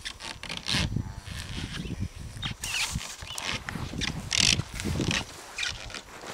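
A blue plastic calf sled shoved and scraped about by a Dexter cow's nose and mouth, giving a run of irregular rubbing and scraping noises, with the loudest bursts about a third of the way in and again past the middle.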